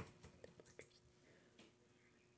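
Near silence: room tone with a few faint ticks in the first second, from trading cards being handled in the hands.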